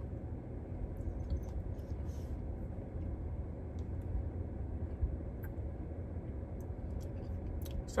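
Steady low hum in a car cabin, with faint scattered clicks and smacks of a mouthful of Frosty eaten off a spoon.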